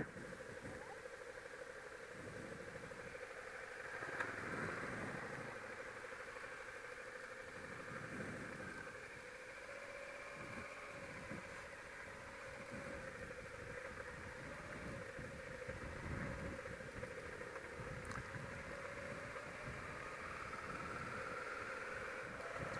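Suzuki V-Strom motorcycle riding slowly along a dirt road, heard faintly from a helmet camera. A steady engine note runs under irregular low rumbles.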